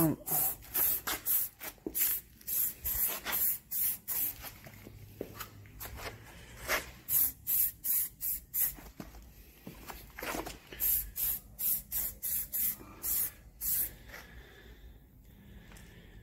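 Aerosol can of clear lacquer spraying in short, sharp squirts of hiss, several a second, as the edges of a car wing are coated. The squirts come in three runs with brief pauses between and stop about two seconds before the end.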